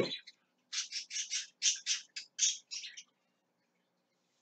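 A bird giving a quick series of about a dozen short, harsh calls, starting just under a second in and stopping at about three seconds.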